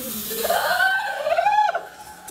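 A person's voice crying out: two high cries that each rise in pitch, the second one louder.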